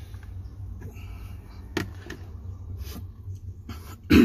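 A few sharp clicks and taps of metal parts being handled on a rebuilt car starter motor as its end cover and screws are fitted, over a steady low hum.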